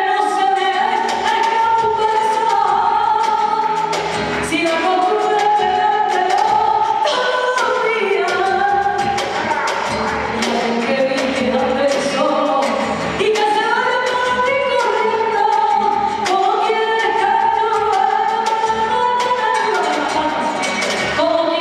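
Live song: a woman sings a sustained melody into a microphone over band accompaniment, with drum and percussion strokes throughout.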